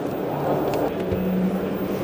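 Steady background din of a busy exhibition hall, a wash of crowd chatter, with a low held hum through the second half.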